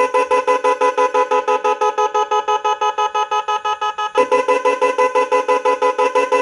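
Motorcycle electric horns driven by an electronic horn tuner, sounding in a fast pulsed pattern of about seven beeps a second. About four seconds in the pattern briefly breaks and restarts, as the tuner cycles through its tone modes.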